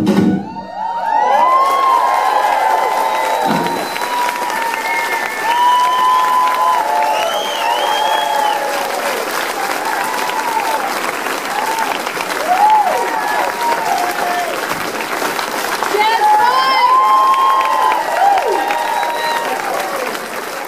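Swing music stops right at the start, and an audience breaks into applause with cheering and many short whoops that rise and fall in pitch.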